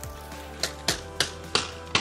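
Background music with a run of five sharp knocks, about three a second, starting a little after half a second in: a knife blade striking the split-bamboo strips of a woven wall panel.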